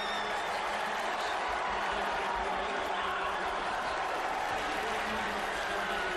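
College football stadium crowd cheering steadily after a touchdown.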